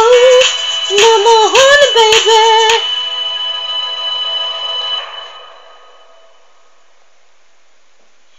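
A woman sings a few held, bending notes without clear words over a pop backing track. The track ends on a held chord that fades away about halfway through, leaving only a faint steady hiss.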